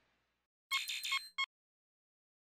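Short electronic chime of bright beeping tones, three quick pulses and a last brief blip, starting a little past halfway and lasting under a second: an outro logo sound sting.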